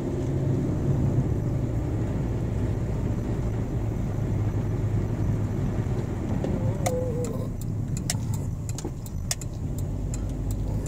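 Steady low engine and tyre hum of a car driving slowly, heard from inside the cabin. In the last few seconds there is a scatter of sharp clicks and light rattles.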